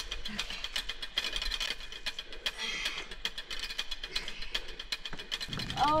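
Close, rapid clicking and scraping of a climber scrambling up granite boulders: shoes and hands on rough rock and gear rattling, many small ticks a second with no steady tone.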